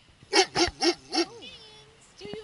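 German Shepherd vocalizing, 'talking': four short, loud woofing calls in quick succession, then one long held whining note.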